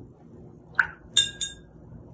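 A paintbrush knocked against a glass water jar: two sharp, ringing glass clinks about a quarter second apart, just past the middle, with a brief soft sound just before them.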